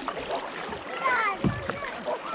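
Paddling a plastic tandem kayak: paddle blades dipping and splashing, with choppy water against the hull and a dull thump about one and a half seconds in.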